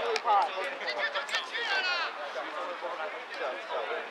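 Several people shouting and calling out across an open sports field, the words not clear, with one loud, high-pitched shout about halfway through.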